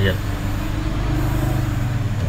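A man's voice giving a sermon, holding one drawn-out syllable over a steady low hum.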